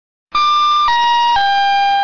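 Three-note descending electronic chime of a railway-station public-address system, the signal that an announcement is about to follow. It starts about a third of a second in, and the notes step down about half a second apart, the last held longest.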